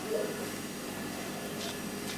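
Quiet steady hiss of room tone, with a faint soft squelch of mayonnaise being squeezed from a soft pack just after the start.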